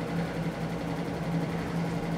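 Small electric fan running steadily in a room: a low, even hum with a soft whoosh of air.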